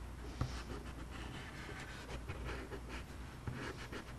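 Chalk stick scratching on construction paper in short, faint strokes as thick lines are drawn.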